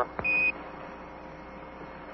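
Quindar tone on the Apollo mission-control radio link: a single short high beep just after a small click, marking the end of a Houston CAPCOM transmission, followed by steady radio hiss.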